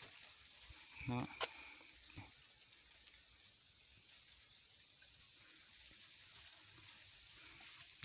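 Near silence: faint, even background hiss, with one short spoken word and a single click about a second in.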